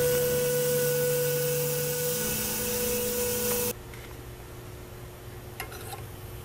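Gas-over-oil valve actuator stroking the valve open on a remote solenoid command: a loud rush of pressurised nitrogen with a steady whine, which cuts off suddenly a little past halfway through as the stroke ends.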